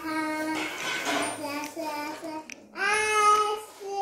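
A child singing in a high voice, a few drawn-out notes with a short break near the three-second mark.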